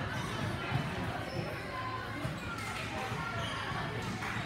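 Indistinct voices in a large, echoing gym, with dull thuds of gymnasts' feet landing on a balance beam and mats, a few sharper knocks among them.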